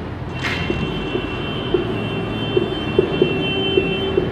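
Marker pen writing on a whiteboard, with a thin squeak, over a steady low background rumble.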